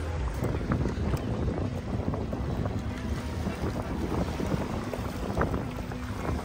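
Wind buffeting the microphone outdoors, a steady low rumble, with a faint steady hum underneath.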